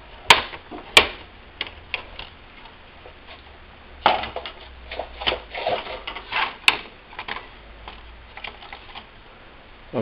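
Plastic snap-in clips of an Asus X44H laptop's palmrest top case clicking loose as a plastic spudger pries along its seam: two sharp snaps in the first second, then a busier run of clicks and scraping plastic a few seconds later with one more sharp snap, and scattered small clicks after.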